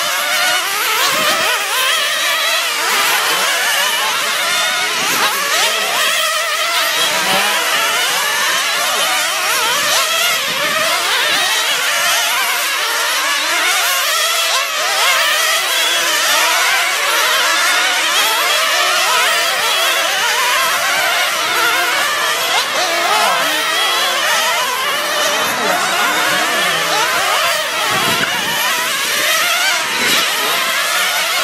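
A pack of nitro RC sprint cars racing, their small two-stroke glow engines buzzing at high pitch. The engines overlap, each rising and falling in pitch as it accelerates and eases off around the track.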